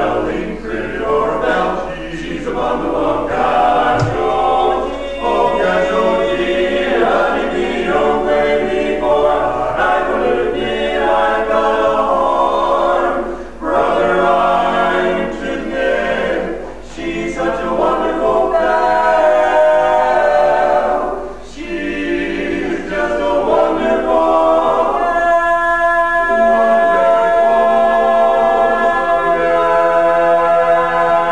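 Male barbershop quartet singing a cappella in four-part close harmony (tenor, lead, baritone, bass). Near the end the voices settle onto one held chord.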